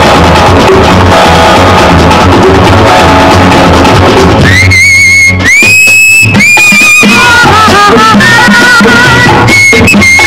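Tamil film song music from the 1970s: a busy instrumental passage with drums, and about halfway through a high, held melody line comes in over it, its pitch wavering and then moving in shifting phrases.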